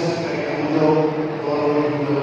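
A man's voice chanting in long, drawn-out notes.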